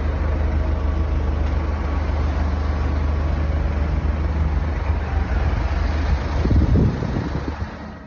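Road traffic: cars driving past on a street, heard as a steady noisy rumble through a phone microphone, swelling briefly about seven seconds in before fading out.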